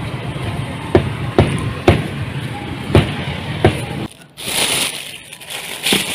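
Meat cleaver chopping roasted pork on a thick wooden chopping block: five sharp chops about a second apart. About four seconds in the sound cuts off and gives way to the crinkle of a plastic bag being handled.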